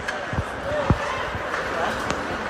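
Ice hockey play at close range: two sharp, hollow knocks of puck and sticks against the rink's boards, about half a second and a second in, over background voices in the rink.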